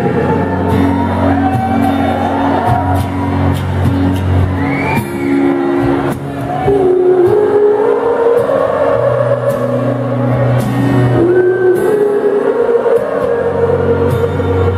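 A live acoustic guitar song with a hall full of people singing along loudly.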